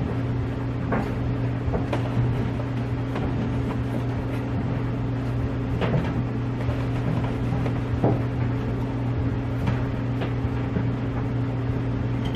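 Plastic laundry containers being handled: a few light clicks and knocks from a detergent jug and a jar of laundry pods, over a steady low hum.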